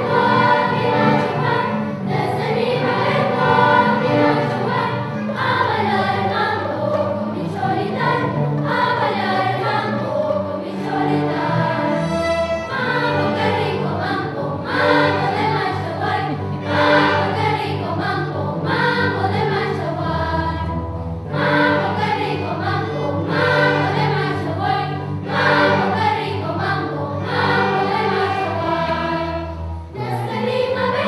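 Children's choir singing, accompanied by a youth string orchestra of violins and cellos, in one continuous piece.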